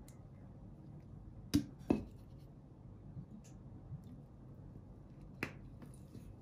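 Sharp clicks from handling a plastic bottle over a mixing bowl of flour: two clicks a third of a second apart about one and a half seconds in, and a lighter one near the end, against a quiet room.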